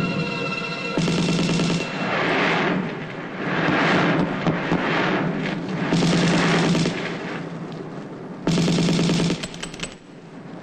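Film-soundtrack automatic gunfire: repeated bursts of rapid machine-gun fire, about a second each, with rushing swells of noise between them and music underneath.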